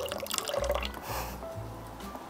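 Whey trickling in a thin stream from a tofu press's spout into a pot, tapering off, over soft background music.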